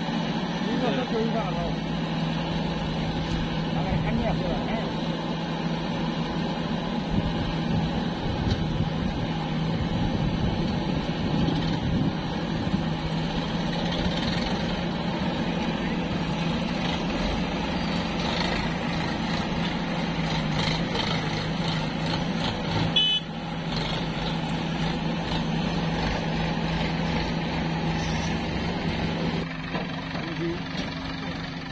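Diesel engines of a JCB backhoe loader and Sonalika tractors running, a steady drone with a constant low hum, broken by a short dip about 23 seconds in.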